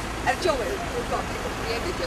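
Steady road and engine noise of a moving car, heard from inside it, with voices talking in the background.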